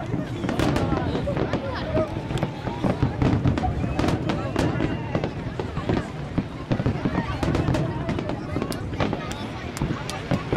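Aerial fireworks shells bursting in a dense, irregular barrage, several bangs and crackles a second.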